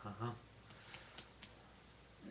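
A person's short voiced "ha ha" sound, not words, followed by four faint sharp clicks about a quarter second apart.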